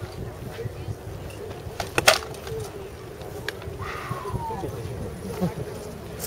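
A pair of sharp knocks in quick succession about two seconds in, rattan SCA polearms striking in armoured combat, over a steady insect-like buzz.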